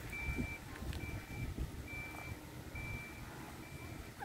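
A single high-pitched beep repeating at an even pace, about one half-second beep every second, over low wind rumble on the microphone.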